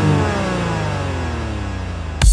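Electronic dance music in a breakdown: a synthesizer sweep, a stack of tones gliding steadily down in pitch and slowly getting quieter.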